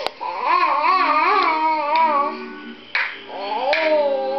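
A toddler babbling and vocalising in a high, wavering sing-song voice, with a few short knocks.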